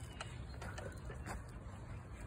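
Faint outdoor background noise, with a couple of light clicks.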